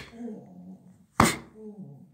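A sharp blow struck on a patient's lower back about a second in, each blow followed by a short pained groan. These are a bonesetter's strikes to set the lumbar vertebrae back in place.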